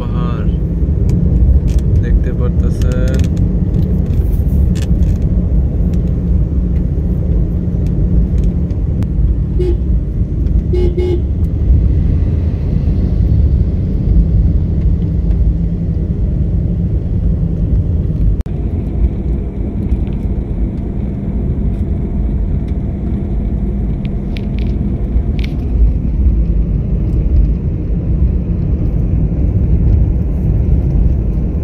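Steady low engine and road rumble of a moving vehicle, heard from on board, with a couple of short horn toots about ten seconds in.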